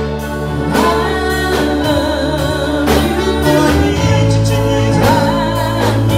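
Live gospel worship music: singing over a church band with bass and keyboard, with regular drum hits keeping a steady beat.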